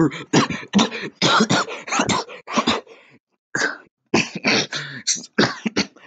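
A man coughing in a rapid string of short, harsh bursts, about three a second, with a brief break a little past halfway.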